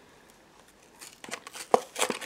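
A small cardboard blind box being pried open by hand: a few short clicks and scrapes of the card flap, starting about halfway through.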